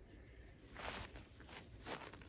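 Quiet outdoor background with insects chirping steadily. There are two soft, brief handling noises, about a second in and near the end, as a plastic hose-end sprayer bottle is handled and set down.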